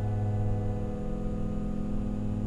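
Grand piano chord held and ringing on, slowly fading, with no new notes struck.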